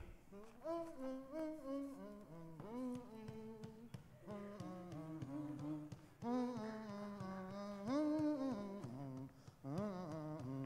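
A man humming a wordless tune with no accompaniment, held notes stepping up and down, his voice standing in for comedy background music.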